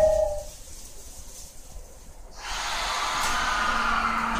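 Quiet inside a Rinkai Line 70-000 series train for about two seconds. Then, about two and a half seconds in, a sudden hiss with faint steady tones starts as the train begins to move off.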